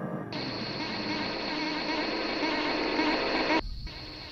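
Electronic ambient music from a live synthesizer performance, a dense layered texture. A steady high tone enters just after the start. Most of the sound cuts off abruptly near the end, leaving a quieter layer.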